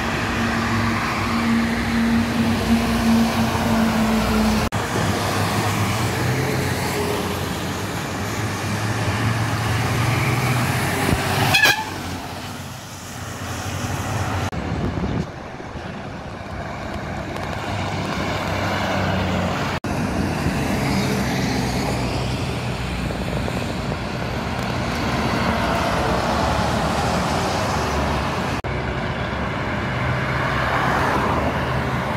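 Heavy trucks and cars passing on a highway, with engine and tyre noise throughout. A truck horn sounds as one steady held note in the first few seconds. The sound breaks off abruptly several times at edit cuts.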